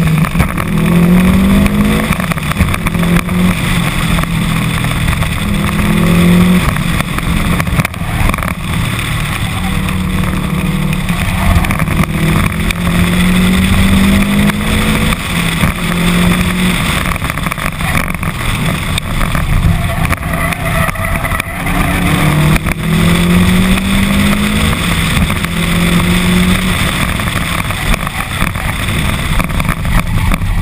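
Subaru WRX STI's 2.5-litre turbocharged flat-four engine under hard acceleration on an autocross run. Its note climbs again and again and drops back as the driver goes on and off the throttle between cones, over a steady rush of wind and road noise on the exterior-mounted camera.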